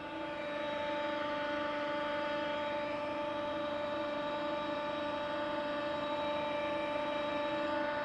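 Steady machinery hum from water treatment plant equipment, a continuous drone holding several fixed pitches with no rhythm or change.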